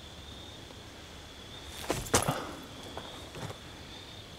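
Footfall crunching on dry leaf litter as a disc golf putt is thrown: two short, sharp sounds about two seconds in, over a faint, steady insect buzz.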